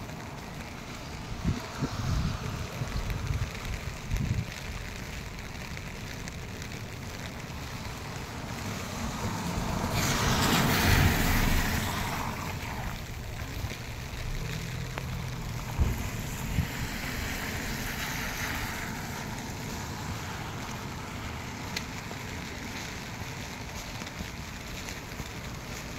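Steady rain hiss over a wet street, with wind buffeting the microphone in low gusts during the first few seconds. About halfway through, a car's tyres hiss past on the wet road, swelling and fading over a few seconds.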